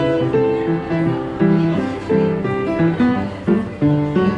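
Upright piano played by hand: a tune of chords and melody notes that change every fraction of a second.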